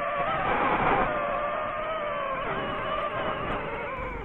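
Drone's motors and propellers whining steadily in flight, a few pitches wavering slightly, with a rush of noise about half a second to a second in.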